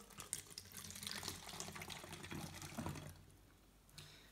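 Vinegar poured from a plastic bottle through a plastic funnel into an empty plastic bottle: a splashing, trickling pour that stops about three seconds in.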